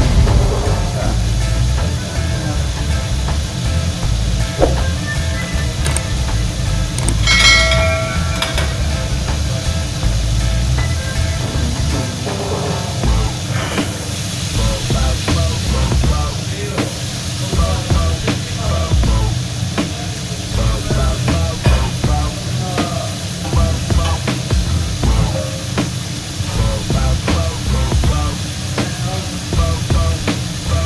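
Commercial kitchen noise: the steady rumble and hiss of the range's extraction hood and gas burners, with clinks and clatter of pans and utensils and a brief squeal about seven seconds in. Music plays underneath, with faint voices.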